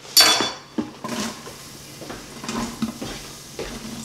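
Chopped onions and peppers tipped from a wooden cutting board into a hot Instant Pot insert on sauté: a short loud hiss as they hit the steaming pot, then scattered knocks and clinks of the board and utensils against the stainless steel pot.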